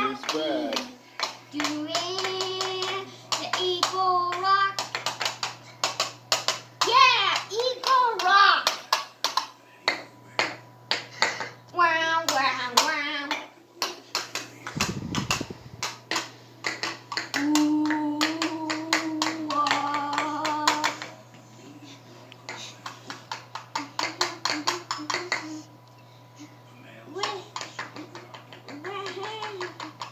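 A young child's voice singing and chanting in bursts without clear words, over quick, even hand claps. There is one low thump about halfway through.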